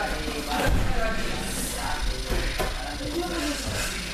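Judo throws landing on gym mats, with a couple of sharp thuds of bodies hitting the mat under faint background voices.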